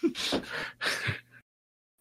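A few short, breathy bursts of a person laughing, then about half a second of dead silence.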